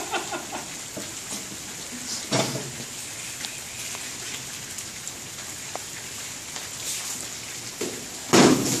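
Steady rain falling on a gazebo roof, an even hiss with a brief thump about two and a half seconds in.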